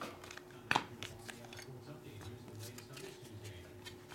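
Trading cards being handled: one sharp tap a little under a second in, as a card in a rigid plastic holder is set down, then faint shuffling and ticks as the next stack of cards is picked up, over a faint steady hum.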